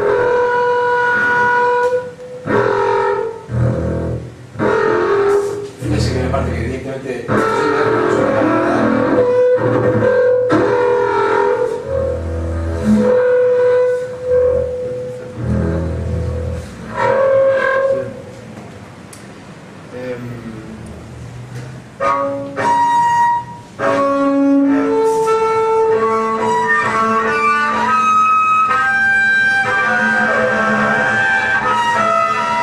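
Double bass played with the bow: a run of sustained notes, some low and heavy in the middle, a quieter stretch about two-thirds of the way through, then a string of clearer, separate notes.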